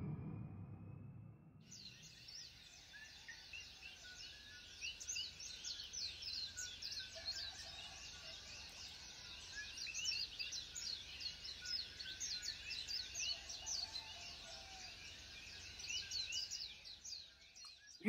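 A low rumble fades out in the first second or so, then a faint outdoor chorus of small birds chirping rapidly and continuously.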